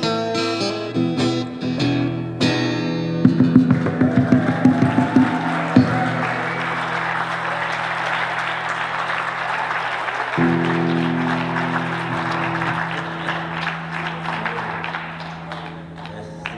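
Acoustic guitar ending a Delta blues number: picked notes, then a run of hard strums about three seconds in. Chords keep ringing, changing once about ten seconds in, under audience applause that fades near the end.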